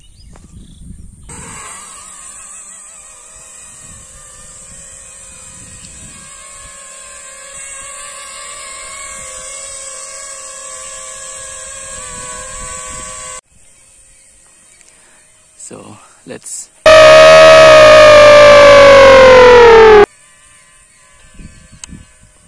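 A mini quadcopter's brushless motors with tri-blade propellers spin up about a second in and then run as a steady, multi-toned whine while it hovers, the pitch shifting about halfway through. After a drop in level, a much louder whine falls in pitch for about three seconds and cuts off suddenly.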